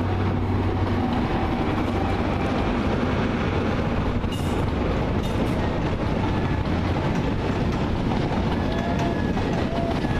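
A Grand Central diesel passenger train moving along the tracks, a steady rumble of engines and wheels on rail.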